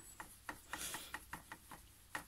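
Nylon paintbrush working watercolour paint in a plastic palette well: a faint, irregular run of small taps and clicks of the brush against the plastic.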